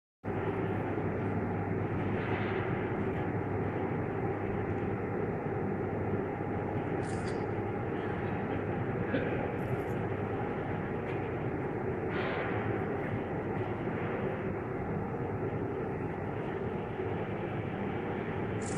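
A steady mechanical hum with a low drone that holds level throughout, and a few faint brief higher sounds over it.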